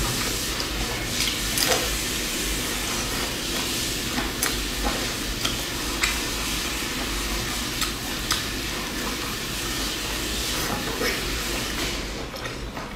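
Close-miked chewing and crunching of a crisp pan-fried stuffed flatbread dipped in chili sauce: a steady crackly noise with sharper crunches now and then.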